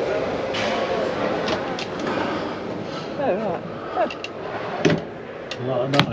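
Background chatter of many people in a large exhibition hall, with a nearby voice briefly about three seconds in and a couple of sharp knocks near the end.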